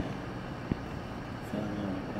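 Faint voices playing back through a smartphone's small speaker, over a steady low background hum, with a single sharp tap about a third of the way in.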